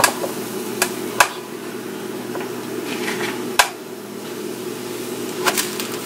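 Sharp knocks and clicks from a round electric waffle maker being handled and its metal lid opened, about five in all with a louder one midway, over a steady low hum.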